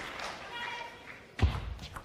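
A single sharp knock of a plastic table tennis ball striking table or bat, about one and a half seconds in, ringing briefly in a large hall.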